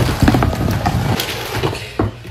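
Cardboard box flaps pulled open and the objects inside knocked and rattled about by hand: a quick, irregular run of knocks and rustles, loudest at the start and easing off.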